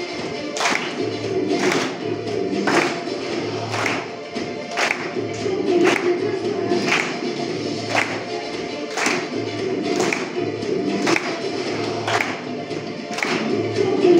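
A group of children clapping hands in unison, a sharp clap about once a second, in a body-percussion routine over a music track with singing.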